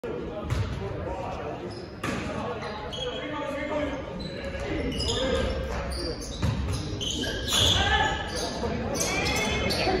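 Basketball game in an echoing gym: a basketball bouncing and thudding on the hardwood court several times, with players and spectators shouting, the voices louder in the second half.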